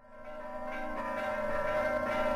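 Bells ringing at the opening of a song recording, fading in from silence and growing steadily louder.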